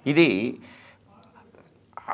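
A man's voice: one short spoken word with a rising-then-falling pitch in the first half second, then a pause of about a second and a half before he speaks again.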